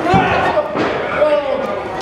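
A wrestling kick landing on a bare torso with a sharp smack right at the start, followed by shouting voices.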